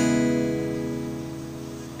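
A single C♯m7 barre chord on an acoustic guitar, strummed once just before and left to ring out, fading slowly.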